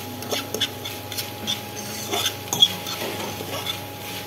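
A metal fork stirring and tossing noodles in a frying pan, with irregular scrapes and clinks against the pan, the sharpest about two and a half seconds in, over a light sizzle.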